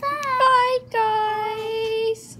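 A boy singing two drawn-out notes: a short wavering one, then a long, steady held note from about a second in.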